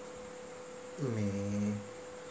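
A man's short voiced 'mmm' hum at a steady pitch, about a second long, starting halfway through, over a faint steady tone.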